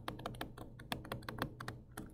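Stylus tapping and clicking on a tablet screen while handwriting, a quick, irregular run of faint clicks.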